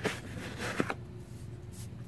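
Faint handling noise over a low room hum, with two light clicks about a second apart.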